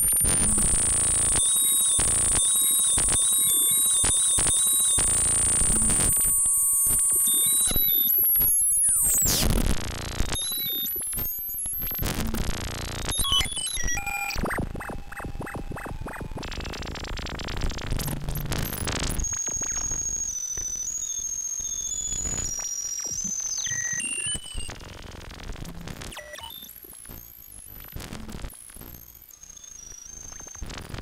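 Ciat-Lonbarde Cocoquantus 2 looper-sampler, cable-patched and unprocessed, putting out harsh, glitchy electronic noise. It opens with a loud, dense stretch carrying steady high whistling tones, which ends in a falling sweep about nine seconds in. Then come sparser clicks, a fast stutter and high stepped beeps, and it grows quieter over the last few seconds.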